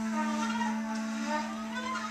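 Small acoustic ensemble of tenor saxophone, bass clarinet, bowed cello and trumpet playing a quiet, sustained passage: one long steady low note is held through, with fainter held tones above it.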